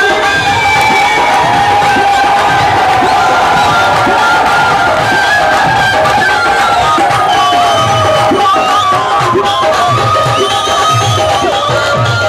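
Live Rajasthani folk music led by a bansuri flute playing a sustained, sliding melody over a steady low beat, with a crowd cheering and shouting.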